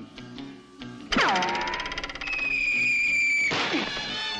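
Cartoon boing sound effect about a second in: a fast-fluttering twang that drops steeply in pitch, over the orchestral underscore. It is followed by a held high note that cuts off sharply near the end.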